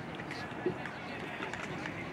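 Background voices and chatter across an outdoor football training pitch, with one short knock about two-thirds of a second in.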